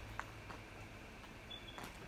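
Quiet outdoor background: a low steady rumble, with a faint click just after the start and a brief, faint high note about one and a half seconds in.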